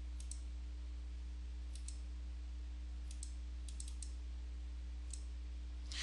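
Faint computer-mouse clicks in small groups at irregular intervals, over a steady low hum.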